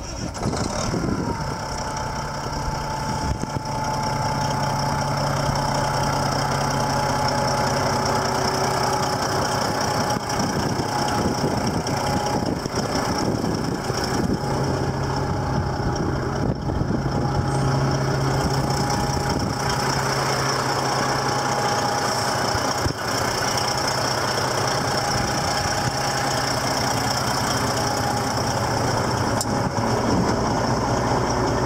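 Heavy-truck diesel engine idling steadily, with a thin steady whine above the engine's low drone.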